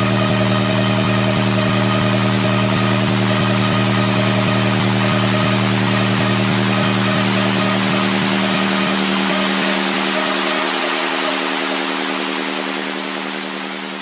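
Hard trance electronic dance music: a held synth chord over a swelling hiss, with no beat. The low bass drops away a little past halfway and the whole track starts to fade out near the end.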